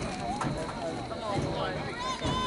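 Several overlapping voices calling and chattering from players and spectators, with no single clear speaker.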